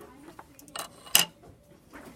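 Crumpled aluminum foil being handled on a table: a few faint crackles and one sharp click a little over a second in.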